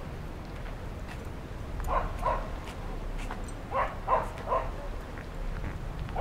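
A dog barking in short groups: two barks about two seconds in, then three more a couple of seconds later.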